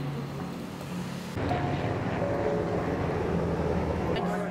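Outdoor wind rumbling on the microphone, stepping up suddenly about a second and a half in, with faint steady tones beneath it.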